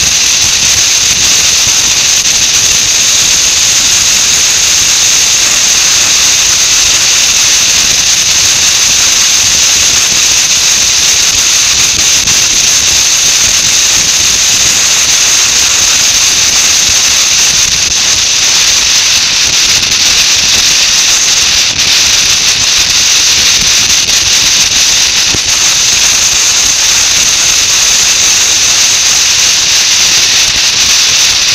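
Steady, loud, high hiss of wind rushing over a motorcycle-mounted camera at road speed, with no engine note showing through.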